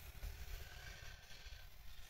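Faint low rumble and hiss of background noise, with no distinct event.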